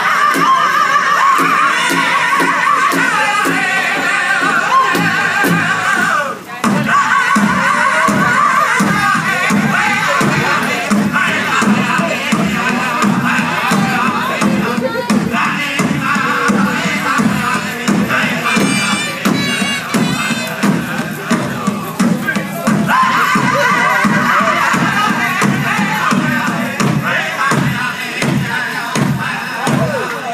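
Powwow drum and singers performing a women's traditional dance song: high voices over a steady, even beat on a large drum. The singing swells in the first few seconds and again near the end.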